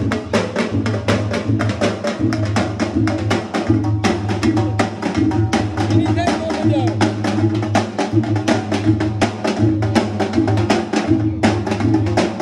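Drum-led music with a fast, steady beat of sharp strikes, several a second, with voices singing over it.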